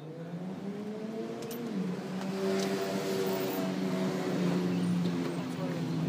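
A car engine running, its note rising over the first two seconds and then holding steady.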